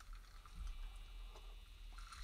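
Faint sipping and swallowing as a man drinks from a glass.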